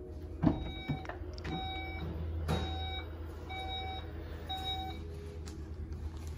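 Volkswagen Touareg power tailgate opening, its warning buzzer beeping about once a second, each beep about half a second long. A sharp click about half a second in marks the latch releasing, and a second knock follows about two seconds later.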